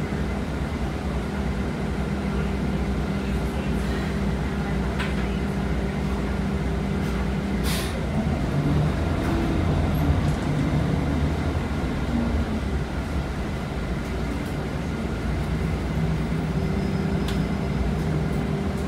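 Interior of a 2019 Nova Bus LFS city bus: a steady drivetrain hum and rumble with a low droning tone. About 8 s in there is a short, sharp hiss of air from the bus's air system. After it the drone fades under a rougher rumble, and it returns near the end.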